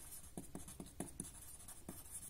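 Pencil writing on paper: faint, irregular scratching strokes as a word is written out.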